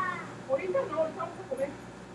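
Muffled voices from the neighbours: a few short, irregular, voice-like sounds, fairly quiet against the room.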